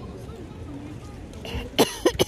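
A person coughs sharply once near the end, over a low, steady outdoor background.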